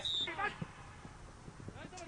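A man's shouted voice trails off about half a second in, leaving quiet outdoor ambience broken by a few faint, short knocks.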